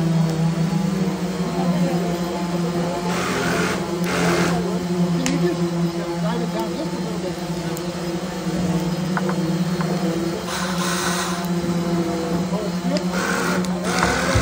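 A small motor running steadily with a constant low hum throughout, with several short bursts of hiss and faint voices in the background.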